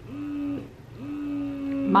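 A woman humming two thoughtful 'hmm's at one steady pitch, a short one and then a longer one, over the low, steady drone of a breast pump running in the background.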